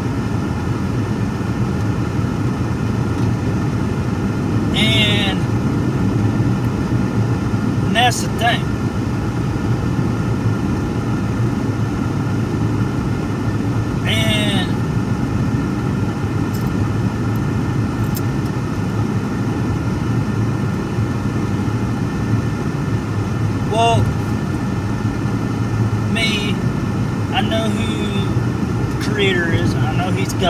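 Steady low rumble of road and engine noise inside a moving car's cabin, with a few short voice sounds from the driver now and then.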